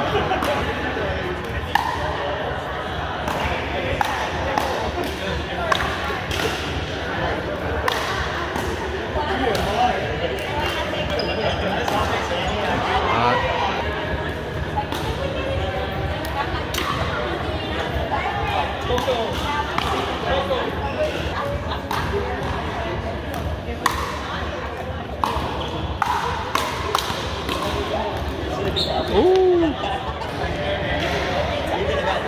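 Pickleball play in a large gym: irregular sharp pops of paddles striking the plastic ball and the ball bouncing on the hardwood floor, echoing, over steady background chatter. A brief squeal that rises and falls near the end is the loudest sound.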